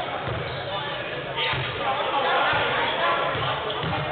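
Basketball bouncing on a hardwood gym floor, with indistinct voices of players and onlookers echoing in the gym.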